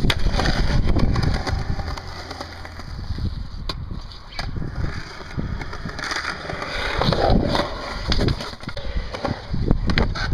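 Skateboard wheels rolling over concrete with a continuous rumble, broken by several sharp clacks of the board.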